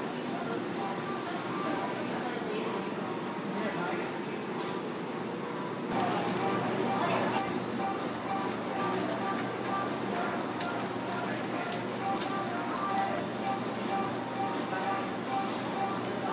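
Background music over indistinct restaurant chatter, with a few light clicks of a knife and fork.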